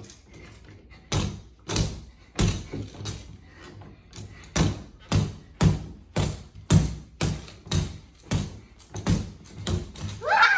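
Boxing gloves punching a free-standing reflex punching bag on a spring pole, a run of thuds about two a second, with a short pause about three seconds in.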